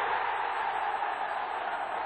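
Football stadium crowd cheering a goal, a steady, even noise with no single voice standing out.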